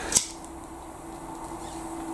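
A lighter struck once, a short sharp click just after the start, as she lights up to smoke. A faint steady hum runs underneath.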